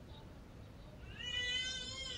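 A single drawn-out, high-pitched animal cry starting about a second in, rising slightly in pitch and then falling away.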